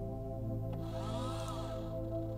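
Soft ambient music with steady tones; about a second in, a motor whine rises and then falls in pitch over roughly a second, with a hiss above it: the drive motors of a Synta 16 GoTo SynScan telescope mount slewing.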